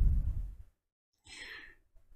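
A man's voice trailing off, then a short, faint breath in through the mouth about halfway through, drawn before he speaks again.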